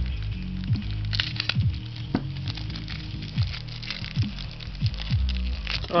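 Plastic shrink-wrap crinkling and crackling as it is slit with a folding knife, over background music.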